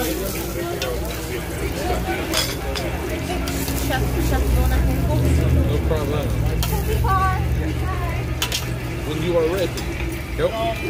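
Meat sizzling on a tabletop Korean barbecue grill, with a few sharp clicks of metal tongs against the grill and dishes. A steady low hum runs underneath, swelling a little around the middle, with voices chattering in the background.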